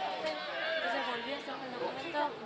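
Several voices talking and calling out at once, overlapping and indistinct, from players and onlookers at a football pitch.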